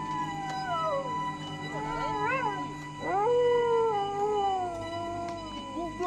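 A dog howling in three long drawn-out calls. The first falls in pitch, the second wavers up and down, and the last, starting about three seconds in, is the longest and loudest and slowly sinks. Under it runs a steady droning music bed.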